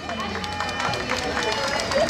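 Crowd chatter: several people talking at once in the background.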